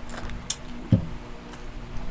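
Plastic food wrapper being handled and pulled open, giving a few short crinkles and clicks about half a second and a second in.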